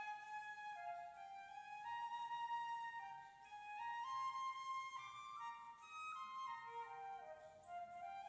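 A child playing a slow solo melody on a flute: one line of held notes that step up and down, each lasting from under a second to about a second and a half.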